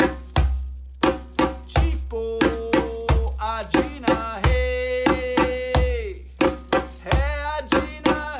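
Djembe played by hand in a slow repeating bass-tone-tone pattern, a deep bass stroke followed by two sharper tone strokes, about one bass stroke every second and a half. A man's voice sings along, holding long notes.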